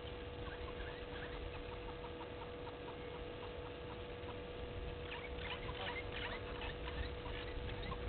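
Many short, high chirps and ticks, most likely small birds calling in the bush, growing busier about five seconds in, over a steady electrical hum and low rumble.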